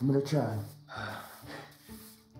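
A man's voice speaking briefly, a short spoken greeting in two bursts with breathy sounds between.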